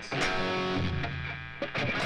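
Electric guitar playing power chords off the A string: a chord at the fourth fret moving up to the fifth, with the last one slid down. The chords ring on between pick strokes, and fresh strokes come near the end.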